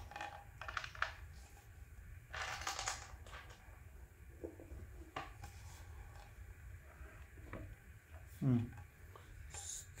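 Handling noise from a display stand's flat round base as it is moved and turned by hand: scattered light clicks and knocks, with a longer rubbing scrape about two and a half seconds in.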